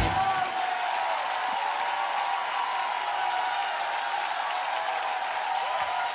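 Steady applause from a studio audience, left behind as the band's backing music stops at the very start.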